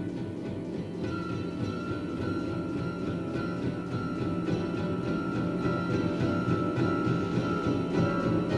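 Orchestral film score: a dense, low, sustained texture with a high held note entering about a second in, slowly growing louder.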